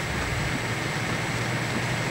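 Steady background noise: a constant low hum under an even hiss, with no distinct sound standing out.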